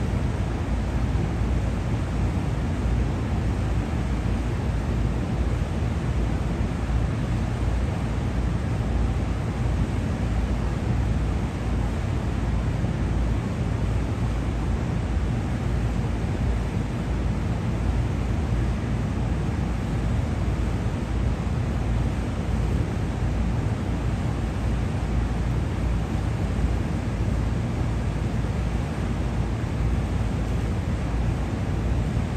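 A steady low rumble with an even hiss over it and no distinct events: city noise around rooftop exhaust stacks and ventilation equipment.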